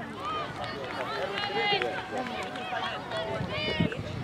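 Overlapping shouts and calls of youth soccer players and sideline spectators across an outdoor field, several voices at once and none close by.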